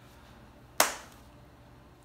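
A single sharp smack about a second in, a hand striking something, dying away quickly.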